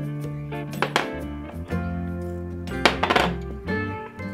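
Background music with steady held notes, with a few light clinks about one second and about three seconds in.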